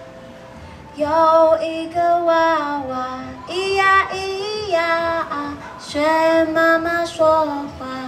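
A woman singing a song to her own ukulele accompaniment. A few held ukulele notes sound first, and the voice comes in about a second in.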